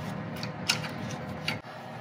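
A few faint, short metallic clicks and taps of a flat-head screwdriver working at a broken engine temperature sensor in the engine bay, over a faint steady hum.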